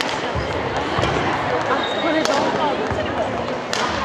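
A badminton rally on a wooden gym floor: two sharp racket strikes on the shuttlecock about a second and a half apart, and dull footfall thuds on the court, over a steady babble of spectators talking.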